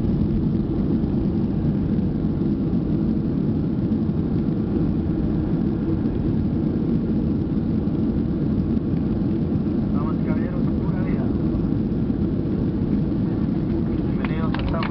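Boeing 737-700 cabin noise during the landing rollout: a steady, low roar from the engines and the wheels on the runway, heard from inside the cabin.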